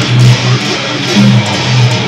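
Electric guitar playing a low metalcore riff of held notes that change every half second or so.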